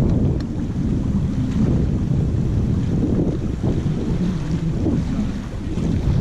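Steady low wind rumble buffeting the microphone out on open river water, with the sound of the water moving around the boat underneath.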